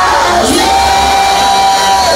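Loud worship music with a steady low beat, a voice gliding up about half a second in to one long held high note, and a congregation shouting and cheering.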